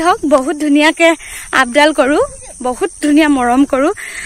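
A woman talking, close to the microphone, in continuous phrases. Behind her runs a steady high-pitched chirring of insects.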